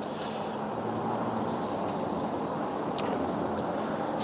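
Steady background room noise, an even hum and hiss, with a faint click about three seconds in.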